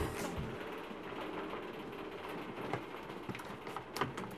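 Hand-cranked mobile library shelving being wound along its rails: a steady mechanical noise with scattered clicks from the crank and gearing.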